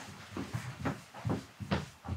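Footsteps of people walking across a hard floor: about five evenly spaced steps, a little over two a second.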